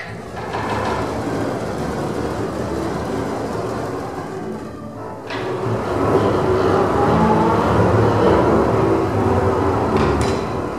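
A large double bass ensemble playing a dense, noise-like texture with few clear pitches, the kind of sound its extended playing techniques make. It dips briefly about halfway, then swells louder.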